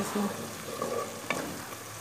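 Chopped vegetables frying and sizzling in oil in a steel pot as they are stirred with a spoon, with one sharp tap of the spoon against the pot just over a second in.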